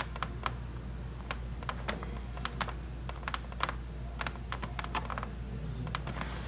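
Irregular light clicks and taps, like typing, over a steady low hum.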